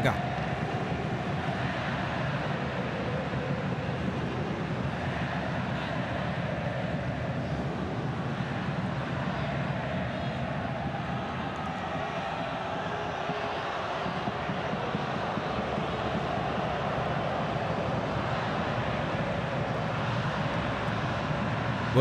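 Large football stadium crowd making a steady din.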